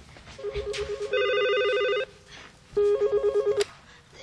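Corded landline telephone ringing with an electronic warbling trill, two rings: the first about a second and a half long, getting louder partway through, the second shorter, nearly a second long.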